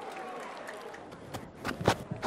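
Broadcast cricket-ground ambience: a steady low wash of background noise, with two sharp knocks near the end.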